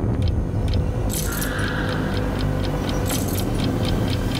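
Ominous trailer sound design: a low rumbling drone and a held hum under a steady ticking of about four ticks a second, with two short, bright, rattling flurries, one about a second in and another around three seconds.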